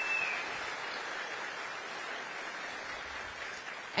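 Audience applauding in a hall, the clapping steady and slowly fading away. A brief high tone sounds at the very start.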